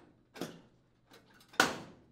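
The main top of an LG gas range being snapped into place by hand: a light click, then a louder snap about a second and a half in.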